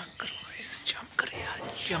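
A person whispering close to the microphone, with ordinary voiced speech starting near the end.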